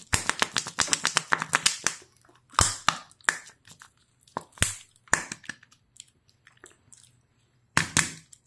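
Shiny printed wrapper being peeled and torn off a Kinder Joy-style chocolate surprise egg: a dense run of crinkling crackles for the first two seconds, then single sharp crackles about a second apart as the last of the wrapper comes away.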